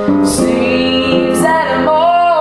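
A young man singing in a high, light voice, accompanying himself on an upright piano with sustained chords.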